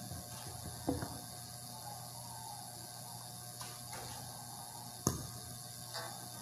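Faint room tone broken by a small click about a second in and a sharper knock about five seconds in: a handheld microphone being handled and set down on a cloth-covered table.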